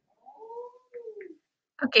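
A cat meowing once: a single call, quieter than the speech around it, rising then falling in pitch, about a second long.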